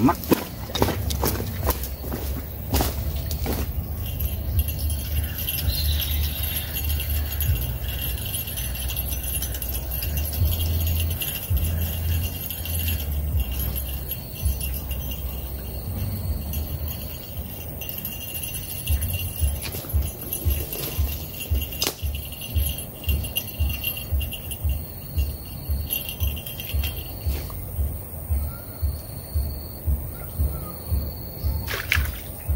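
Small bell on a fishing rod jingling while a hooked fish pulls on the line and is played in. Under it runs a low rumble that turns into about two soft thumps a second in the second half.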